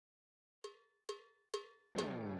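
Three evenly spaced, short, pitched percussion taps, about half a second apart, counting in a song; the song's guitar comes in right at the end.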